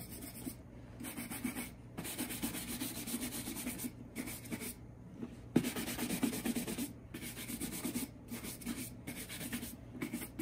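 Bristle shoe brush rubbed quickly back and forth over the leather of a Red Wing Iron Ranger boot. The rapid rasping strokes are broken by several short pauses, with a sharp knock about halfway through.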